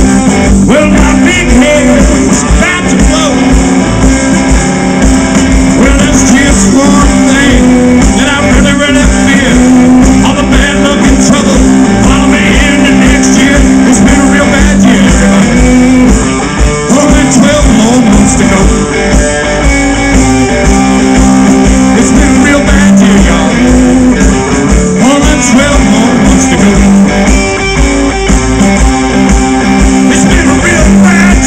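Live blues band playing over a stage PA: electric guitar and drum kit with a steady beat, and a singer's voice at times.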